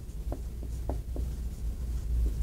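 Marker writing on a whiteboard: about four short strokes in the first second and a half as letters are drawn, over a steady low room hum.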